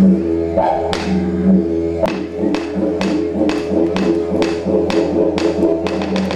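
Didgeridoo playing a continuous drone with shifting overtones. Sharp taps keep time over it and settle into a steady beat of about two and a half a second about two seconds in.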